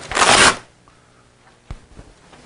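A brief, loud burst of rustling noise lasting about half a second, then a single sharp click later on.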